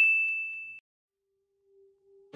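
The fading tail of a high, bell-like 'ding' sound effect, as used for a subscribe-button click, cut off just under a second in. Then quiet, with a faint low tone coming in near the end.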